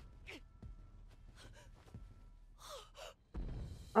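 Several short gasps and breathy intakes of breath from a person. About three seconds in, a low rumble comes up underneath.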